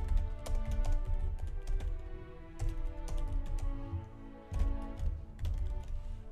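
Computer keyboard typing, a run of irregular key clicks, over background music with sustained notes.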